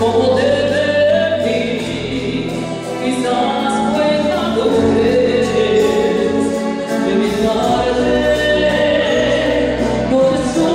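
A woman singing a ballad into a microphone over instrumental accompaniment, her long held notes gliding between pitches above steady bass notes.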